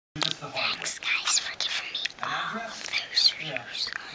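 A boy whispering close to the microphone, in short broken phrases.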